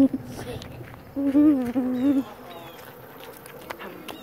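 A child humming a held note for about a second, starting about a second in.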